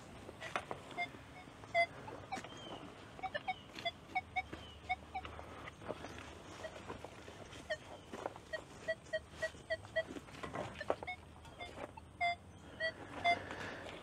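Nokta Triple Score metal detector giving short target-tone beeps as the search coil is swept over the wood chips, with a quick even run of beeps a little past the middle, over faint clicks and rustling.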